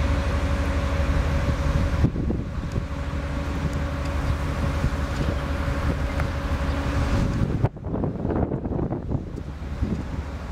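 Strong wind buffeting the microphone in gusts, with a steady low hum under it that stops about three-quarters of the way through.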